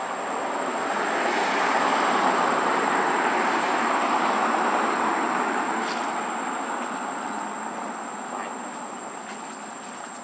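A broad rushing noise that builds over the first two seconds and fades away over the last few, with a thin, steady, high insect tone throughout.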